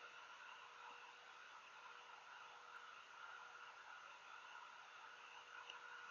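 Near silence: faint steady hiss and hum of the recording, room tone.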